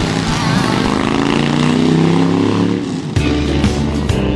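Motorcycle engine revving as a sound effect, its pitch rising and then falling. About three seconds in it cuts to guitar music.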